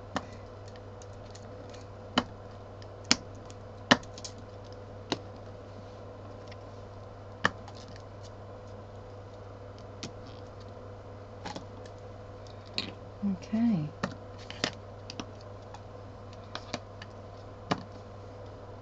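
Irregular light taps and clicks of craft supplies being handled and set down on a work table, over a steady low hum. A short murmured vocal sound comes about two-thirds of the way through.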